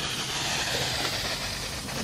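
Steady hiss of water spraying onto the ceramic-coated paint and sheeting off.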